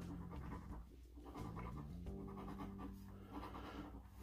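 A coin scratching the coating off a scratch-off lottery ticket, faint.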